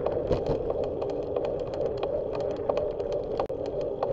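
Riding noise picked up by a bicycle-mounted camera: a steady hum with frequent small irregular rattles and clicks as the bike rolls over the pavement.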